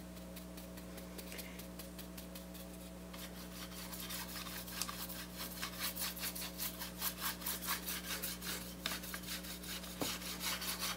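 A dry paint brush scrubbing back and forth across a wooden board in quick repeated strokes, faint at first and louder from about three seconds in, over a steady low electrical hum.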